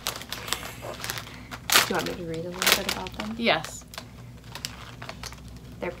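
A plastic potato-chip bag crinkling and crackling as it is handled and turned over, in a run of quick sharp clicks. A short voice sound rises and falls about two seconds in.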